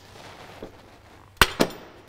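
Two sharp metallic knocks about a fifth of a second apart, about one and a half seconds in, with a brief ring after the second: metal parts knocking together while the driveshaft is being worked on under the car.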